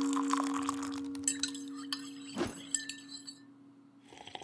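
Podcast intro sting: a held chord fading out, overlaid with glassy clinking and chiming sounds and a brief sweep about two and a half seconds in.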